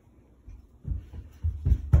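Footsteps of a child running in socks on a hard plank floor: a few soft, low thuds starting just under a second in, growing louder toward the end.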